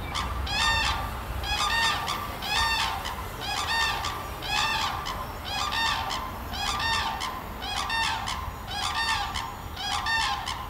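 A bird calling over and over, about one call a second in a steady, unbroken series.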